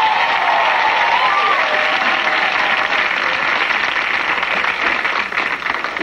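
Studio audience applauding, with a voice or two calling out in the first couple of seconds; the clapping thins out near the end.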